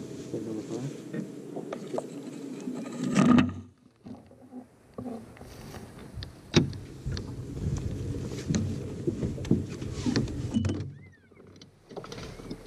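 A bass being netted over the side of a fishing boat: water splashing and net handling, loudest in one burst about three seconds in, then sharp knocks and rustling as the fish is brought aboard.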